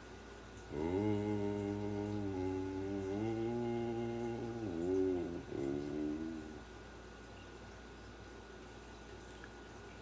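An unaccompanied man's voice humming without words: one long, low note held for about four seconds with a slight dip in pitch, then a shorter phrase. The last few seconds are quiet room tone.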